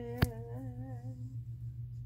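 A person humming a short wavering tune for about a second and a half, with one sharp click about a quarter of a second in.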